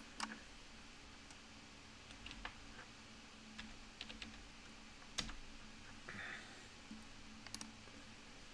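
Faint, scattered clicks of computer keyboard keys and a mouse, a few seconds apart, over a low steady room hum.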